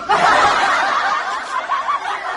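Women laughing together, loud and unbroken, cutting in suddenly at the start.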